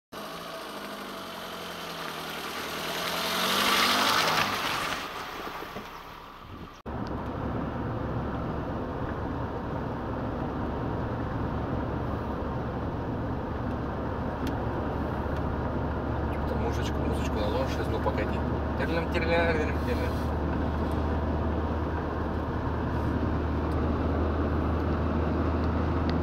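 Cabin noise inside a Renault Kangoo van driving on a rough country road: steady engine and road noise with a low drone. Before this, for the first six seconds or so, a vehicle sound swells and fades with a falling pitch, then cuts off abruptly.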